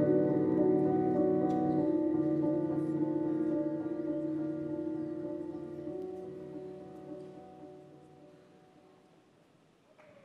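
Soft music of long held chords, fading out steadily to silence a little over eight seconds in: the end of a dance routine's music.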